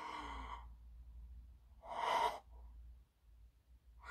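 A woman's two breathy sighs through the hands over her mouth, the second, about two seconds in, louder than the first. She is overcome with emotion and close to tears.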